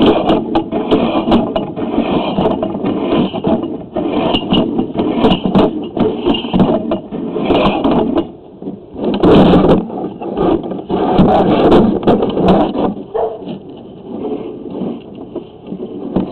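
Scraping and clattering of a sewer inspection camera's push cable being fed down a cast iron drain line, irregular with many small knocks. It dips briefly about halfway through and again near the end, as the camera advances more slowly.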